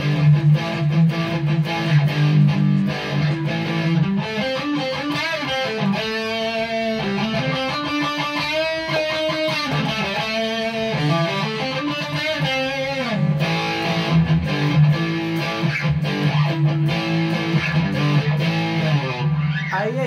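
Electric guitar played through a Lekato WS-80 wireless transmitter just after a channel change, a test of whether the signal interference has cleared. It plays continuously at a steady level with no dropouts, sustained low notes with string bends and wavering pitch in the middle.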